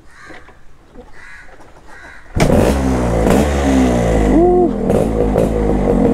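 Restored Yamaha RXZ's 132 cc single-cylinder two-stroke engine starting about two and a half seconds in, then running loudly with a few rises and falls in revs.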